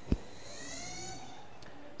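A single sharp click, then a faint high squeak that rises and falls in pitch for about a second, over quiet room tone.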